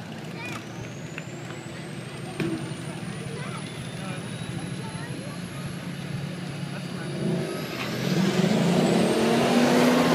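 Two drag-racing vehicles, a car and a pickup truck, rumbling at the starting line, then launching about eight seconds in, their engines getting much louder. A thin high whine rises slowly in pitch before the launch, and people talk in the crowd.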